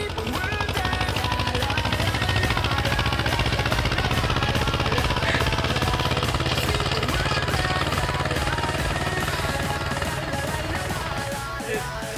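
Diesel farm tractor engine running steadily under load while pulling a loaded hay trailer, with a fast, even beat.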